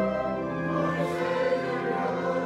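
A choir singing a slow hymn in long, sustained chords, with a chord change about half a second in.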